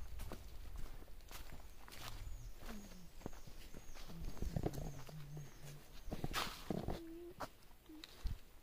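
Footsteps crackling over leaf litter and twigs on a forest path, with a small bird's run of short, high, falling chirps through the middle. A louder rustle of leaves comes about six seconds in.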